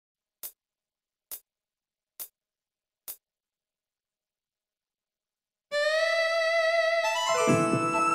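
Four evenly spaced count-in clicks a little under a second apart, then a short silence, then the backing track's intro starts: one held note, joined a second or so later by a full keyboard-led band accompaniment. The saxophone is not yet playing.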